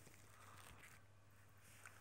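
Near silence: faint room tone with a steady low hum and one tiny click near the end.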